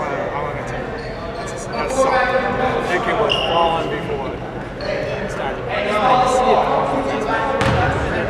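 Basketball being dribbled on a hardwood gym floor amid the voices of players and spectators, all echoing in a large gymnasium.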